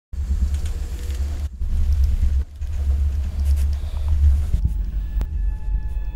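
A deep, low rumble that drops out briefly twice, about one and a half and two and a half seconds in. Near the end there is a sharp click, and faint steady tones of a music bed come in.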